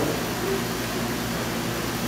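Steady background noise: an even hiss with a faint low hum, with no other sound standing out.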